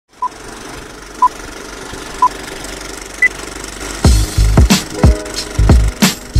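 Intro music: three short beeps a second apart, then a single higher beep, over a steady hiss, like a countdown. A heavy drum beat with bass comes in about four seconds in.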